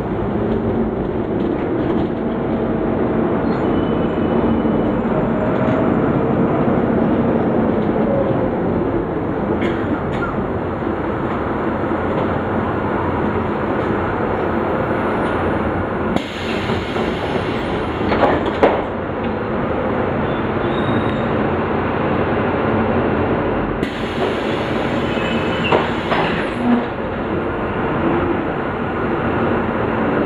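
Cabin noise of a Volvo B9 SALF articulated bus under way: steady diesel engine and road noise, with a few sharp knocks or rattles about two-thirds of the way through and again near the end.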